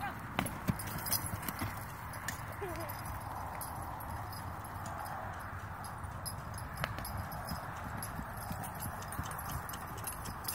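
Hoofbeats of a saddled horse moving around a dirt pen: soft, irregular thuds and clicks over a steady background noise.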